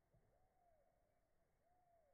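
Near silence with faint distant bird calls: two short single notes, each rising and then falling in pitch, one just after the start and one near the end.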